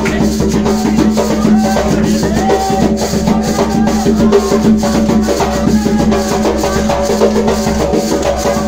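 Live Umbanda ceremonial music: group singing over hand drums and shaken maraca-type rattles, with a regular beat throughout.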